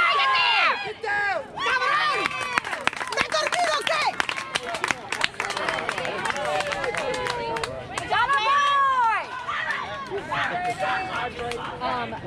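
Children's and adults' voices calling and shouting over one another around a youth baseball field, with one long, drawn-out shout about eight seconds in. Many sharp clicks run through the middle.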